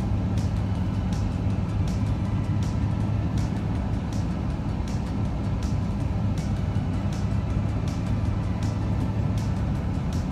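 Steady low rumble of road and engine noise inside a moving car, with music and a regular beat playing along with it.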